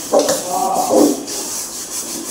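A metal wok (kadai) being scrubbed by hand, a steady rubbing scrape, with a louder pitched squeak in about the first second.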